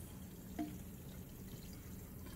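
Thin stream of tap water running from a kitchen faucet through a tube into a plastic water-bottle lid in a stainless steel sink: a steady, quiet trickle and pour.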